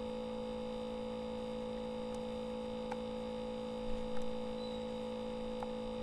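Steady electrical hum in the recording, a constant low buzz with a few faint clicks.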